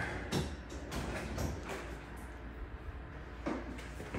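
A few scattered knocks and clunks of things being handled, most of them in the first second and a half and one more near the end, over a steady low hum.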